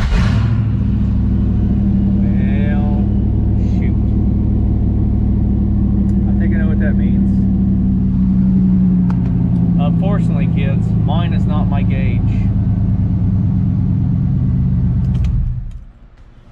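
Third-generation Chevrolet Camaro's engine catching as it is started, then idling steadily before being switched off just before the end.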